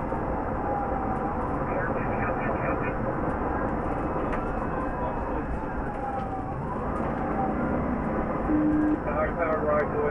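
Police cruiser's siren wailing slowly up and down over heavy road and engine noise inside the car at highway speed.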